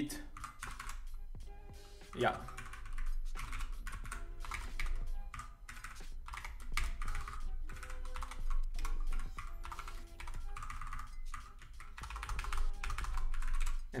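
Typing on a computer keyboard: bursts of rapid key clicks with short pauses, while code is being edited.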